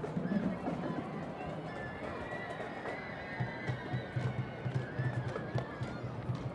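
High school marching band drum line playing a marching cadence: sharp clicks, then steady low drum beats about four a second coming in about halfway through.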